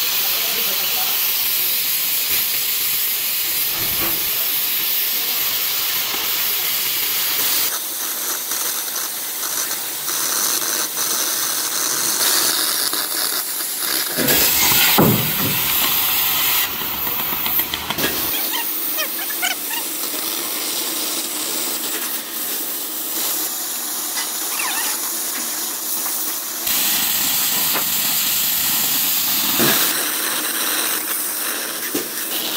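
Oxy-fuel cutting torch on a portable gas-cutting machine hissing steadily as it burns through thick steel plate. The hiss changes abruptly several times, about 8, 14, 18 and 27 seconds in.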